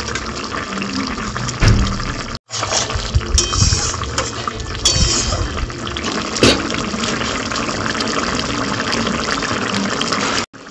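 Thick curry bubbling at a boil in a metal kadai, a steady busy sputter of popping bubbles. The sound drops out for an instant about two and a half seconds in.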